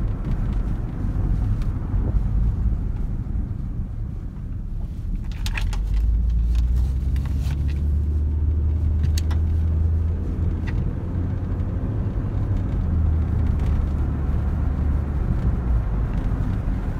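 Steady low engine and road rumble heard from inside a car's cabin, growing stronger about six seconds in, with a few faint clicks.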